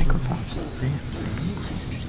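Indistinct low talk away from the microphones, heard through the room's sound system in a large hall.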